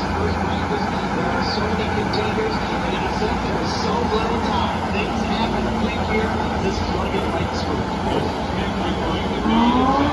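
IndyCar engines (2.2-litre twin-turbo V6s) running on the grid, a steady low drone under crowd chatter. Near the end one engine rises in pitch as it revs.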